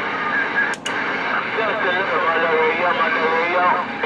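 A voice coming in over a Galaxy CB radio on channel 19, thin and garbled over steady static hiss, too distorted to make out. A sharp click with a momentary drop comes just under a second in.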